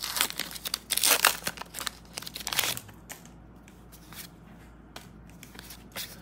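Pokémon booster pack's foil wrapper being torn open and crinkled, loudest about a second in and dying down after about three seconds. A few faint clicks follow as the cards are handled.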